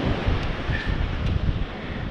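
Wind buffeting the microphone in uneven gusts, over the steady wash of ocean surf.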